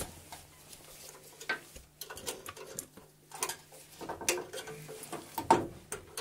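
Scattered metallic clicks and scrapes of a wire hook and spring clip worked by hand against a Trabant's sheet-metal fan housing, tensioning the rubber seal between the cooling fan and the shroud. A sharper knock comes about five and a half seconds in.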